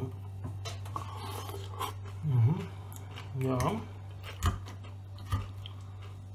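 A person chewing a mouthful of fresh salad (lettuce and cucumber), with a short hummed 'mm' about two seconds in and two sharp clicks near the end.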